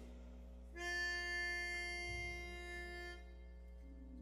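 Pitch pipe blown once: a single steady reedy note held for about two and a half seconds, sounding the starting pitch for a barbershop quartet before it sings a cappella.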